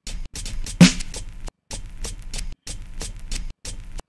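Boom bap drum pattern of chopped breakbeat hits played on an Akai MPC Studio: a quick, steady run of drum hits with a heavy kick about a second in.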